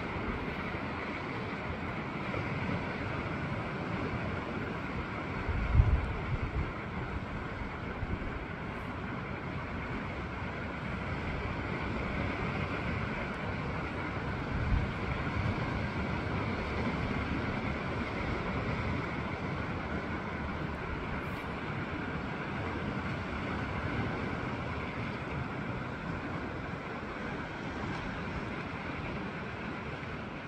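Steady wind rushing over the microphone with the hiss of the sea below, and two heavier gusts buffeting the microphone, about six seconds in and again about fifteen seconds in.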